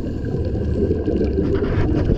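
Underwater ambience picked up through a camera housing: a steady, muffled low rumble of water with faint scattered clicks.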